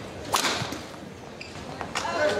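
Badminton racket hitting the shuttlecock in a hard overhead smash: a single sharp crack about a third of a second in, with a short echo in the hall.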